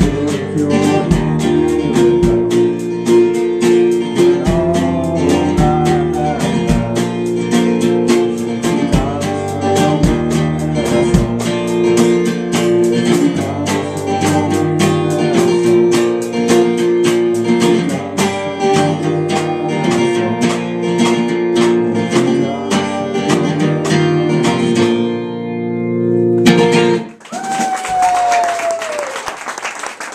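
A live band plays: a strummed acoustic guitar, a singing voice, an electric guitar and a drum kit keeping a steady beat. Near the end the song stops abruptly and the small audience applauds.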